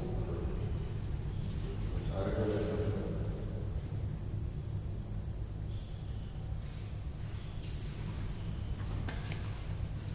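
A steady high-pitched background drone over a low hum, with a faint voice briefly about two seconds in.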